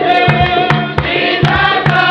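A group of voices singing a Spiritual Baptist hymn over a steady low beat of about three pulses a second, with sharp percussive strokes at intervals.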